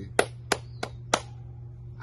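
A man clapping his hands four times, about three claps a second, then stopping.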